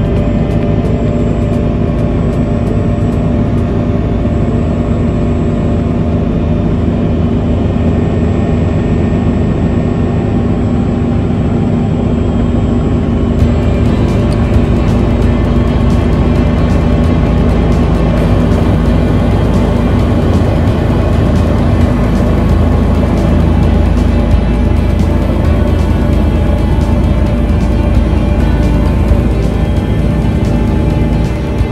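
Steady drone of an aircraft's engines heard from inside the cabin during a low approach to the airfield, mixed with background music.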